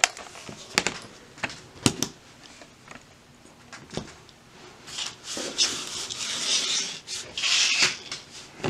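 A handful of sharp, light clicks as the HP x360 laptop's plastic case is flipped and its loose bottom screws drop onto the tabletop, followed near the end by a few seconds of rubbing and scraping as the laptop is slid and handled on the table.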